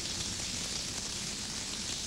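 Shower running: a steady, even hiss of spraying water.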